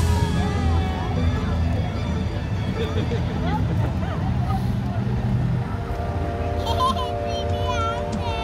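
A truck's diesel engine running low and steady as it creeps past close by, mixed with music and onlookers' voices.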